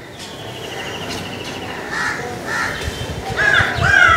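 Crows cawing outdoors: a run of short, harsh caws that begins about halfway through and grows louder near the end.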